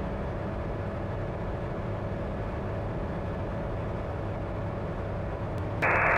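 Steady, even drone of the Comco Ikarus C42C ultralight's engine and propeller in flight, heard from inside the cockpit.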